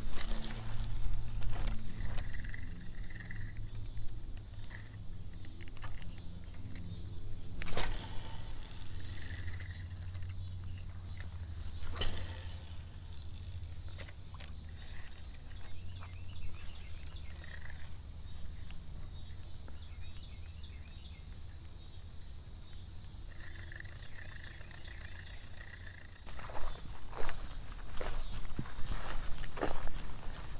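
Handling and wind rumble on a GoPro microphone while a spinning reel is worked during a lure retrieve, with a couple of sharp clicks and faint short chirps. Footsteps through grass and brush come in near the end.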